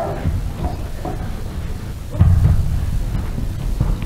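Children's footsteps on a stage floor, heard as low thumps and rumbling, with one louder thud about two seconds in.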